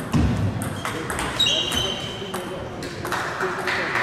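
Table tennis rally: a run of sharp clicks as the celluloid-type plastic ball strikes rackets and table, with a short low thump just after the start and a brief high squeak about a second and a half in, over the murmur of voices in a large hall.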